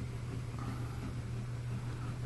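A steady low hum with a faint, even hiss underneath, unchanging throughout.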